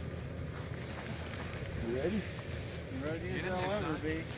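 Speech only: a short spoken 'Ready?' and a few words near the end, over a steady rumble of outdoor background noise.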